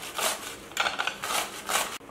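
Cucumber being grated on a stainless steel box grater: repeated rasping strokes of the flesh against the metal teeth, about two a second.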